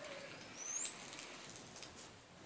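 Hand pipe being lit and drawn on: a faint, thin high whistle rising in pitch for about a second, with a few soft clicks or crackles.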